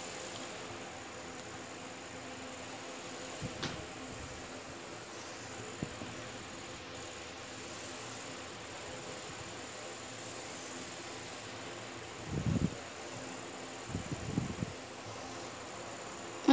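Steady background hum with a thin high whine. Over it come a few soft scrapes and bumps from tailor's chalk and a measuring scale being worked over cloth on a table, the loudest two about twelve and fourteen seconds in.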